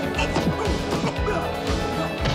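Film fight scene: a run of about five dubbed punch-impact sound effects in quick succession, laid over a dramatic movie score.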